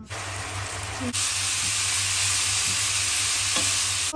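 Red rice with tomatoes sizzling in a frying pan as a wooden spoon stirs it. The sizzle steps up louder about a second in, over a low steady hum.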